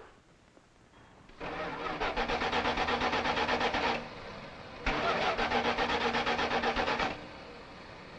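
Car engine being cranked by its starter in two tries of about two and a half seconds each, with a short pause between, pulsing about five times a second. It does not start.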